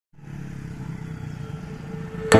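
Motorcycle engine running on a road, with steady traffic noise.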